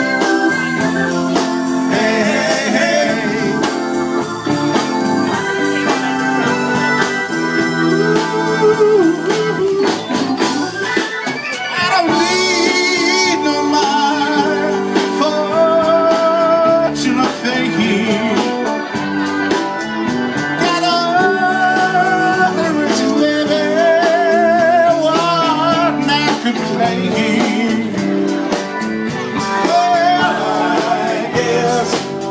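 A live band playing a song, with a singer holding wavering notes over guitar and backing instruments.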